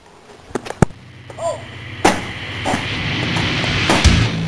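A few sharp knocks and thumps, the loudest about two seconds in and another at the end, from a boy scrambling on wooden landscape timbers and jumping off, over a hiss that grows louder.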